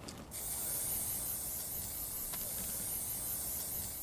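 Aerosol spray-paint can hissing in one long steady spray, starting a moment in.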